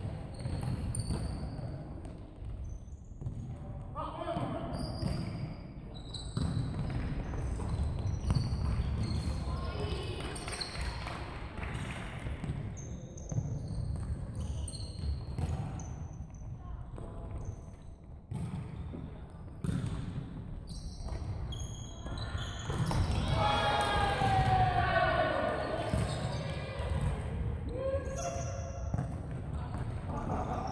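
A futsal ball being kicked and bouncing on a wooden gym floor, with players calling out to each other, all echoing in a large sports hall. The calling is loudest about three quarters of the way through.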